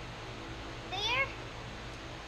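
Steady hum of an electric fan, with one short, rising, pitched call about a second in.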